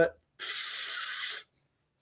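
A man's mouth-made hiss, about a second long, imitating the spray of a siphon-fed sandblaster run off an air compressor.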